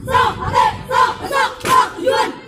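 A marching squad of young women shouting short chant syllables in unison, about five sharp shouts in two seconds in a steady rhythm.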